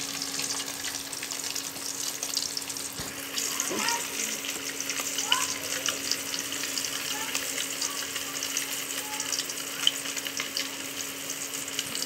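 Food frying in hot oil, a steady crackling sizzle.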